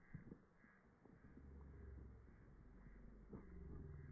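Near silence: a faint low rumble, with a couple of soft knocks about a third of a second in and again near the end.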